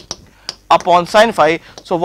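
A man's voice speaking for about a second, preceded by a couple of light clicks from a marker tapping and writing on the board.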